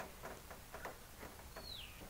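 A few faint light clicks and ticks from small bonnet-protector fittings being handled, then near the end a bird's single falling chirp.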